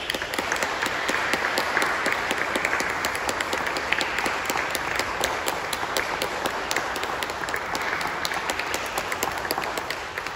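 Audience applauding after a piece of trumpet and organ music, a dense steady patter of many hands clapping that begins to fade near the end.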